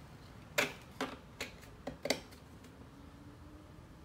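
A few sharp, short clicks and knocks, about five in the first two seconds, as a hard plastic transducer mount bracket is handled and fitted against a boat's transom.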